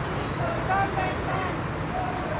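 Steady city-street traffic rumble with scattered voices of people walking in a crowd.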